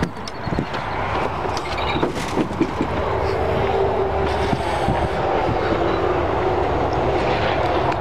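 A vehicle engine running, a steady rumble that grows a little louder over the first few seconds and then holds level.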